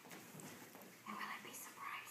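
Quiet whispered voices, in two short bursts starting about a second in.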